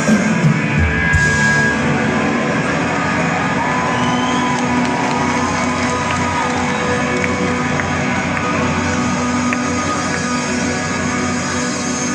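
Live rock band playing with several electric guitars through a stage PA. Loud hits in the first second give way to a long held chord, with a lead line sliding in pitch over it in the middle.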